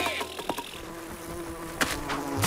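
Cartoon bee buzzing sound effect, a steady drone, with a sharp click near the end.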